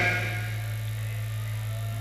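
Pause in an outdoor loudspeaker address: the echo of the voice dies away within the first half second, leaving a steady low electrical hum from the sound system and faint sustained tones.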